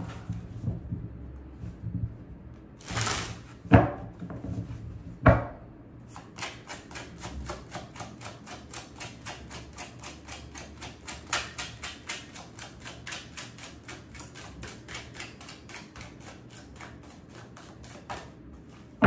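A tarot deck being shuffled by hand: a fast, even patter of cards slapping together, about five a second, from about six seconds in. Before that come a few louder, sharper knocks.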